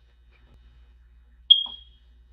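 Quiet room, then about one and a half seconds in a single sharp, high-pitched electronic beep that fades away within half a second.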